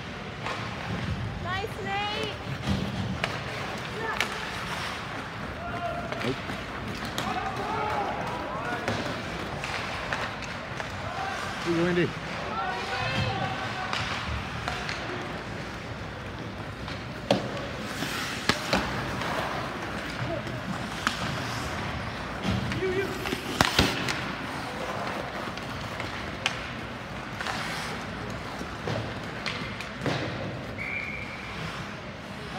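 Ice hockey game sound in a rink: scattered shouts from players and spectators, with sharp knocks of sticks and puck, the loudest about two-thirds of the way through.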